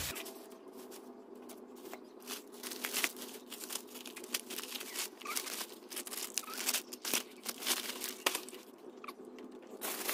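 Thin plastic bag crinkling and rustling as packaged groceries and bottles are packed into it by hand, with many irregular sharp crackles.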